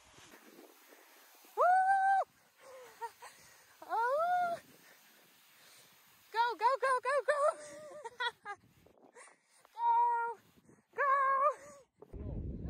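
A woman's high-pitched wordless vocalizing: a string of short squeals and sung notes, several apart with quiet gaps, many rising in pitch as they start, with a quick run of notes about halfway through.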